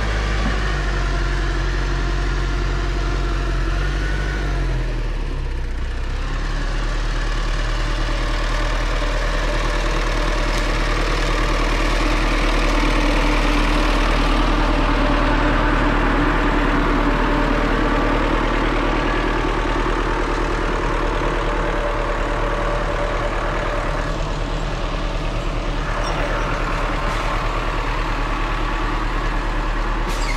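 LKT 81 Turbo forestry skidder's turbo diesel engine running steadily. Its note shifts about five or six seconds in, and it grows louder in the middle as the machine passes close.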